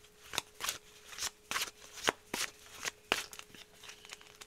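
A deck of oracle cards being shuffled by hand: a run of quick, crisp riffling swishes, about two a second.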